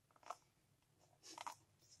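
Near silence: room tone, with two faint, brief rustling or handling sounds, one about a quarter second in and one a little past halfway.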